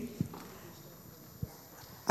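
Two soft footstep thumps on a hard hall floor, about a second apart, over faint room noise.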